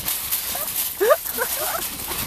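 Metal shopping cart rattling on its wheels as it is towed over rough ground, with people laughing and a rising yelp about a second in.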